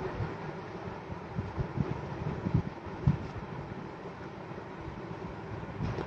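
Fabric being handled and spread out: soft, low rustles and bumps, scattered and irregular, over a steady background hum.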